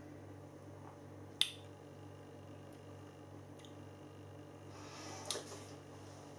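A person tasting beer: one sharp mouth click, a lip smack, about a second and a half in, and a soft breath near the end, over a steady low hum.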